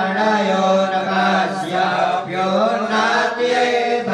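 A group of priests chanting Sanskrit mantras together from their books, a continuous recitation held mostly on one steady pitch.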